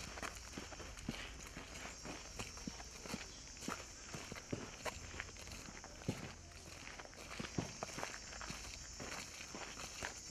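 Faint, irregular footsteps of several people walking on a dirt road.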